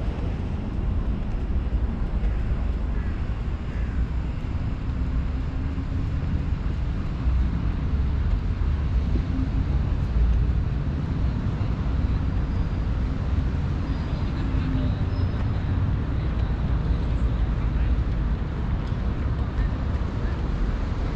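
Steady low rumble of wind buffeting the microphone over distant road traffic, with faint voices of passers-by.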